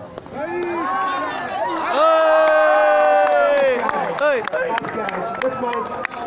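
Several people shouting across the open ground, with one loud, long held yell from about two seconds in that falls away near four seconds. Scattered sharp clicks and more calling follow in the second half.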